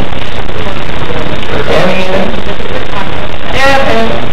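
A young woman laughs into a stage microphone, with brief voices about two seconds in and near the end, over a loud, steady hiss and hum that fills the recording.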